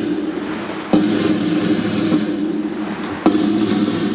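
Slow ceremonial band music: sustained low notes, each new one starting on a sharp beat, about a second in and again just past three seconds.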